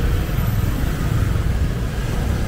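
City street traffic: a steady, loud low rumble of vehicle engines.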